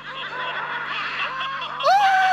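Several voices laughing at once in short, overlapping chuckles. Near the end a held musical note slides up in pitch and comes in.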